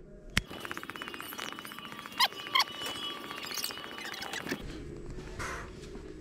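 A single finger snap, then about four seconds of fast-forwarded audio: a rapid, even ticking with short squeaky chirps, as the sound is sped up. Near the end it drops back to normal speed with a low steady hum.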